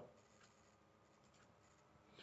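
Near silence: faint room tone with a few faint clicks.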